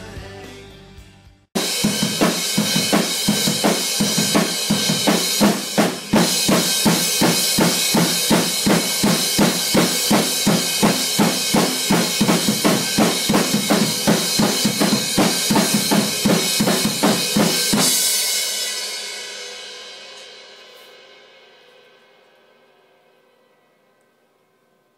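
Acoustic drum kit played hard: a fast, even beat of kick, snare and cymbal strokes starts suddenly and runs for about sixteen seconds. It stops, and the cymbals ring out, fading away slowly over the last six seconds.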